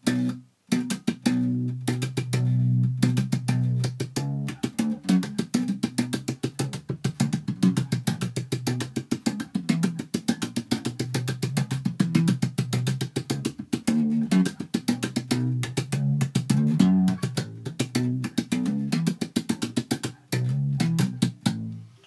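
Electric bass played slap style: a fast funk groove of thumb slaps and finger pops over low bass notes. Many sharp percussive clicks from left-hand hits and mute taps fall between the notes.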